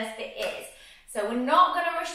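A woman's voice, with a short pause about halfway through.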